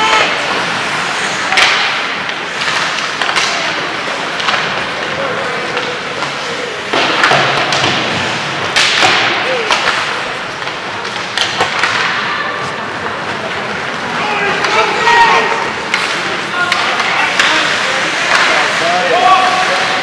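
Ice hockey play: skates scraping the ice, and sticks and puck clacking, with repeated sharp knocks and thuds scattered throughout. Spectators' voices talk and call out over it.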